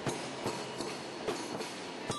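Drums beaten in a steady, even beat of a little over two strokes a second, over a noisy hiss.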